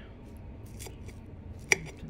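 Metal fork picking through a shredded cabbage and chicken salad on a ceramic plate, with faint clicks and one sharp clink of the tines against the plate near the end.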